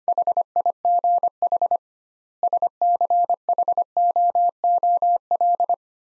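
Morse code sent at 25 words per minute as a steady mid-pitched beep keyed in dots and dashes, spelling HIGH, then a short pause, then SCHOOL.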